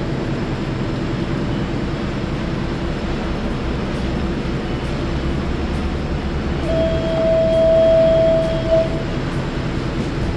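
Steady low rumble throughout, with a clear, held whistle-like tone lasting about two seconds, starting about two-thirds of the way through.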